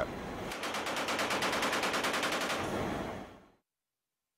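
Machine gun on an aircraft's rear ramp firing one long burst, about ten shots a second, that fades out just before the end.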